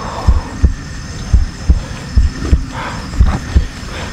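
Low, regular heartbeat-like thumping, about three beats a second, running under the scene as a suspense sound effect, with faint rustling of grass around the third second.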